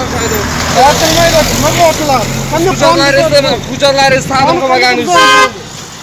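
Men talking loudly at a roadside, with a short car horn toot about five seconds in, followed by laughter.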